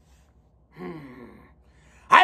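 A man's brief sigh-like vocal sound, falling in pitch, about a second in.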